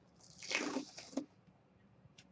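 Hands handling a gold aluminium card case: a scraping rustle lasting about a second, then a single sharp click.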